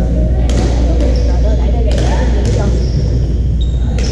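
Badminton rackets striking the shuttlecock, about four sharp cracks spaced a second or so apart, with short high-pitched sneaker squeaks on the hardwood floor, echoing in a large gym over a steady low hum.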